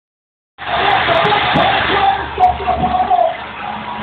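Wrestling arena crowd noise with indistinct voices, played through a TV speaker and picked up by a phone microphone; it cuts in about half a second in.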